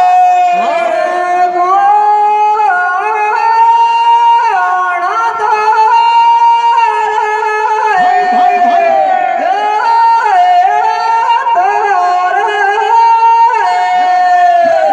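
High-pitched male folk singing in the Rajasthani Teja gayan style, amplified through a microphone and PA. Long drawn-out notes are held, then stepped or slid to new pitches.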